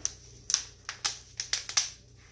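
Sharp plastic crackles and clicks, about eight in a second and a half, from a rice-filled plastic water bottle being gripped and handled as fabric is wrapped around it.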